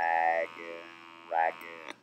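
Electrolarynx buzzing at a single fixed pitch as it voices the words "rag" then "rack". The vowel of "rag" is held about half a second, the vowel of "rack" only a moment: the lengthening before the voiced consonant stands in for the voicing contrast the device cannot make. The device hums faintly between the words and cuts off with a click near the end.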